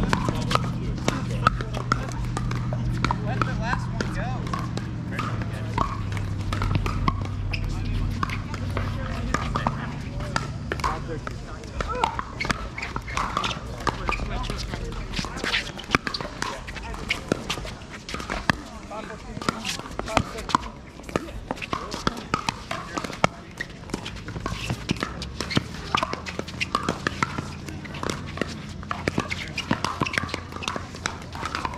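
Pickleball play: repeated sharp pops of paddles hitting a plastic ball, over indistinct voices from the courts. A low steady hum runs through roughly the first half and returns near the end.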